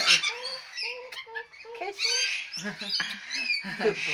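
A caged corella making a series of short chattering notes with small gaps between them.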